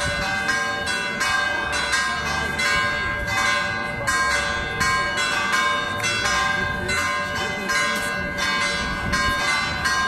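Church bells pealing, struck in quick succession about twice a second, each stroke ringing on over the others.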